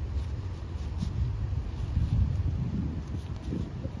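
Wind buffeting the microphone: an uneven low rumble that swells and fades.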